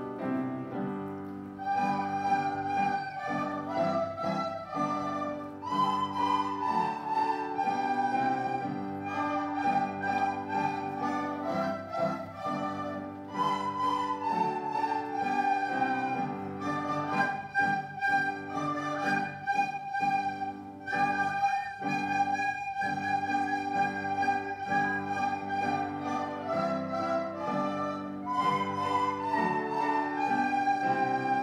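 A class of children playing soprano recorders together, a melody of held notes over a lower accompaniment.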